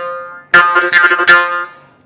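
Morsing (South Indian jaw harp) played in a quick rhythm: a droning metallic twang plucked several times a second. One phrase dies away at the start, and a second begins about half a second in and fades out before the end.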